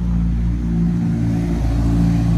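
Steady low mechanical hum with several held low tones, like a running engine or motor.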